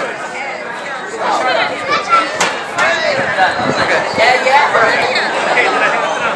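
A crowd of people chattering, many voices talking over one another, with one sharp snap a little over two seconds in.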